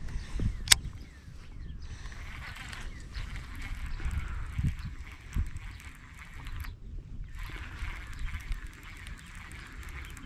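Wind rumbling on the microphone while a baitcasting reel is cranked to retrieve a cast chatterbait. There is one sharp click about a second in, and a faint whirring from the reel that pauses briefly near seven seconds.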